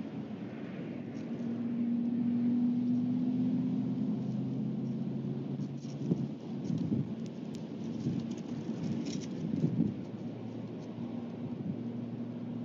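Wind rumbling on the microphone with a low steady hum beneath it. Between about six and ten seconds there is irregular rustling and scratching as a brooding great horned owl shifts and settles on the nest.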